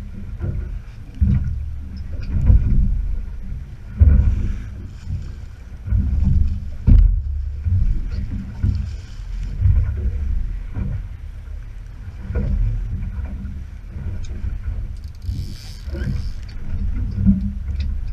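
Small boat drifting at sea: an uneven low rumble of wind on the microphone and water slapping against the hull, with scattered knocks. A short burst of hiss about fifteen seconds in.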